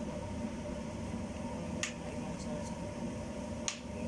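Two short, sharp clicks about two seconds apart over a steady low rumble.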